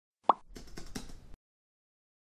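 A single short pop sound effect, then a quick run of keyboard-typing clicks lasting under a second.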